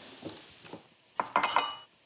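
Kitchenware clinking: a few sharp clinks with a brief ring, a little over a second in, after a quiet start.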